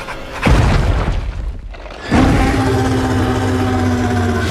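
Two deep booming trailer hits about a second and a half apart, the second opening into a sustained, held orchestral chord.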